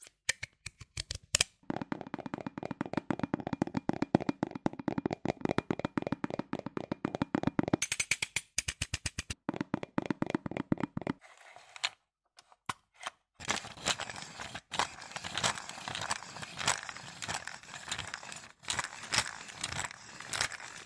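Close-miked ASMR trigger sounds, mostly clicks: a fast, even run of clicks lasting several seconds, then sparser clicks. From about two-thirds of the way through comes a continuous crackling rustle with taps in it.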